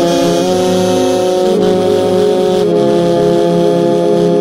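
Saxophone played close up within a church orchestra of brass and woodwinds, holding long sustained chords of a slow hymn; the chord changes about half a second in and again a little past halfway.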